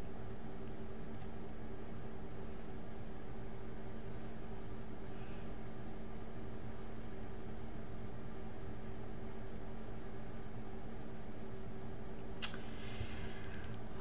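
Steady low hum of room tone, with a few faint steady tones like a computer fan or electrical hum. One short sharp sound comes near the end, followed by a brief soft hiss.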